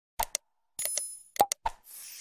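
Sound effects of an animated like-and-subscribe graphic: a string of short plops and clicks, a bell-like ding about a second in, and a swish starting near the end.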